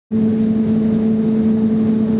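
Asphalt plant machinery running, a loud steady hum holding one even pitch over a rushing noise.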